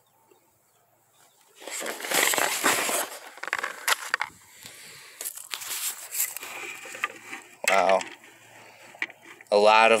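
A pellet-shot cardboard target being handled: cardboard crinkling and tearing, loudest in a dense crackly stretch from about one and a half to four seconds in, with lighter rustling after.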